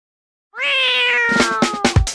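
A cat meows once, long and drawn out, starting about half a second in, its pitch rising briefly and then slowly falling. Drum beats of a dance track come in underneath it partway through.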